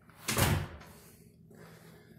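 A door shut once with a thud about half a second in, most likely the house-to-garage entry door.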